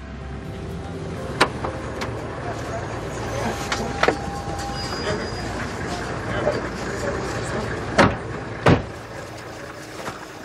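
An SUV's door being worked as someone climbs out: a few clicks and knocks, then two louder knocks close together near the end, over a steady low rumble.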